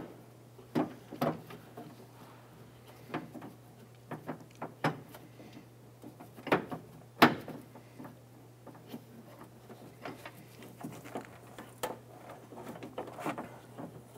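Scattered clicks and light knocks of a door lock cylinder being worked into place by hand inside a Honda Civic's front door, the part and fingers bumping against the metal door shell. The clicks come irregularly, the loudest knock about seven seconds in.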